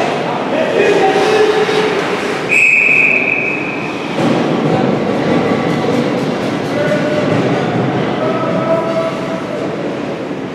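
A referee's whistle blown once, a steady shrill tone lasting about a second and a half, starting about two and a half seconds in. Around it, spectators shout and call out over the echoing din of the ice arena.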